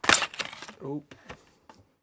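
Cardboard toy box being opened by hand: a sharp crack as the flap comes free, then light clicks and rustling of the packaging.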